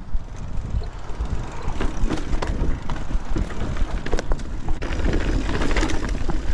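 2021 Santa Cruz 5010 full-suspension mountain bike riding fast down a rocky dirt trail. Tyres roll over the dirt under a steady low rumble, with scattered sharp clicks and knocks from the bike rattling over rocks.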